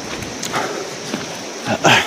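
Footsteps of a person walking on a dirt hillside trail, a few soft steps over a steady hiss, with his voice starting up near the end.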